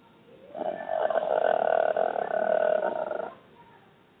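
A man's voice drawing out one long, steady 'uhhh' hesitation for about three seconds.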